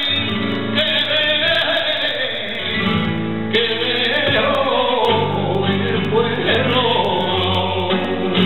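Flamenco cante: a male singer's voice in long, wavering, ornamented lines, accompanied by a flamenco guitar.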